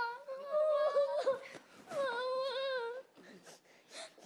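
A young girl crying in two long, wavering, high-pitched wails, the second starting about two seconds in.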